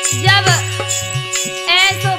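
Indian folk devotional music: a steady drone of held notes over a drum beat, with jingling percussion striking about twice a second. Two short wavering pitched phrases, likely vocal, rise over it, one near the start and one near the end.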